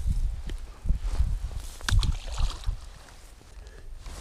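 Wind buffeting the microphone in uneven low gusts, with a few faint clicks and rustles of the angler handling his rod and reel.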